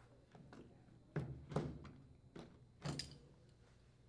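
Faint handling noise as a corrugated plastic washer drain hose is pushed onto its coupler and clamped: a few short knocks and thuds of plastic against the washer cabinet.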